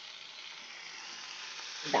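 Hot oil and onion-spice masala sizzling in a frying pan as pieces of marinated chicken are tipped in; the sizzle grows steadily louder.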